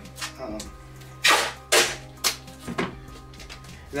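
Duct tape pulled off the roll and torn into a strip: two loud rips about half a second apart, then a shorter third.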